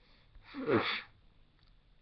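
A woman's short, breathy vocal outburst, about half a second long and falling in pitch.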